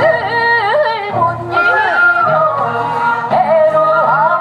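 Women singing a Korean traditional folk song over an amplified backing track through a PA. The voice bends and quavers between held notes.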